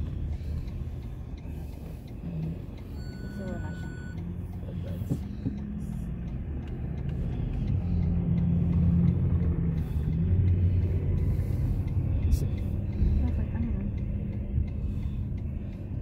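Car cabin noise while driving: a steady low rumble of engine and tyres on the road, growing louder partway through.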